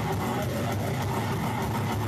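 Goregrind band playing live: heavily distorted guitars and bass in a dense, steady wall of sound over drums.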